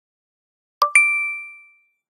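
Logo intro chime: two quick dings, the second higher than the first, ringing out and fading away within about a second.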